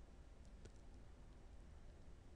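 Near silence: room tone, with two or three faint clicks just over half a second in.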